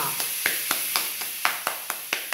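A palm slapping a bar of homemade lye soap held in the other hand: a quick run of about eight sharp taps, roughly four a second. The hard, solid taps show the bar has already set firm though it is not yet fully dry.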